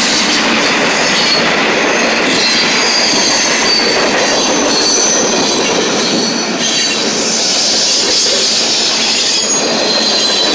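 Freight cars of a passing freight train rolling by close at hand: a steady loud rush of steel wheels on rail. Thin, high-pitched wheel squeal comes and goes over it.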